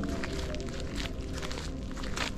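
Footsteps crunching on a gravel track, several steps every few tenths of a second, over a steady low hum.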